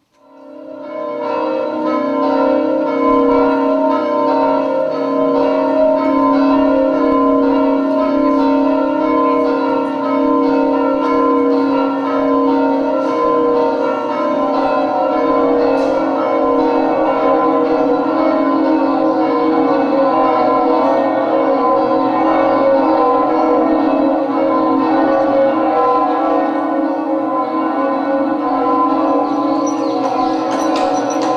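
Many bells ringing together in a dense, continuous peal, swelling in over the first couple of seconds and then holding steady.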